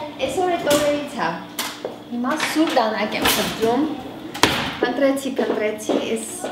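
Talking voices with about three sharp knocks of kitchen items being handled.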